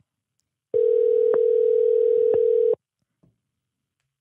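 Telephone ringback tone over a phone line: one steady ring lasting about two seconds, starting just under a second in, while an outgoing call rings at the other end.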